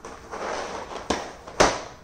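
A cardboard cereal box being picked up and handled: a short rustling scrape, then a light knock and a louder sharp thump about a second and a half in.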